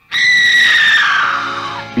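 A woman's long, high-pitched scream that starts suddenly and slides steadily down in pitch as it fades, over film score music.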